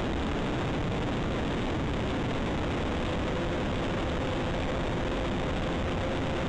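Steady, even noise like hiss or wind on a microphone, with a faint steady hum coming in about three seconds in.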